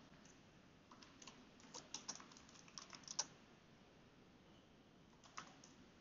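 Faint typing on a computer keyboard: a scattered run of keystrokes in the first half, then a pause and one more keystroke near the end.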